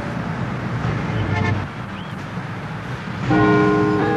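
City street traffic noise, with a short car horn toot about a second and a half in. A held chord of background music comes in near the end.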